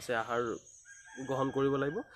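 A rooster crowing faintly in the background under a man's voice.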